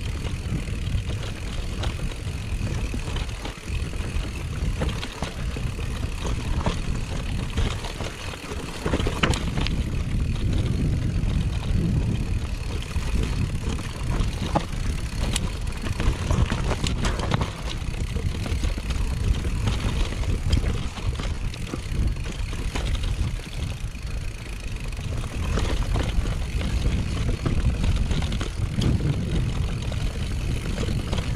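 Giant Trance full-suspension mountain bike riding down a grassy, stony ridge trail: a steady low rumble of wind and tyres, with scattered clicks and rattles from the bike. There is a brief dip in loudness about eight seconds in.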